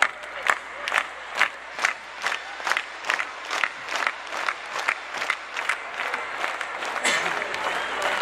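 Stadium crowd clapping in unison with hands over their heads, a steady beat of about two claps a second over the crowd's voices. About seven seconds in, the beat breaks up into loose applause and cheering.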